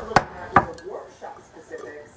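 Two sharp knocks about a third of a second apart, like something hard being set down or bumped close to the phone's microphone.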